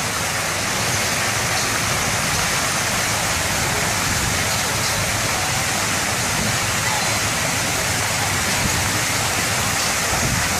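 Burst underground water main shooting a geyser of muddy water into the air: a loud, steady rush of spraying water falling back onto the street.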